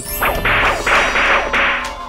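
Editing sound effect for a video transition: a run of four or five whooshing swells of noise, the first sweeping downward.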